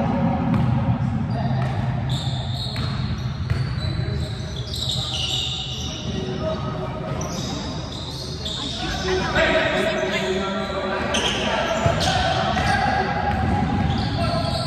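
A basketball bouncing repeatedly on a hardwood gym floor as players dribble up the court, with players' voices calling out, echoing in a large hall.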